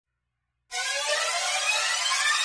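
Silence, then about two-thirds of a second in a synthesized riser sound effect starts: a dense swell of many high tones slowly rising in pitch.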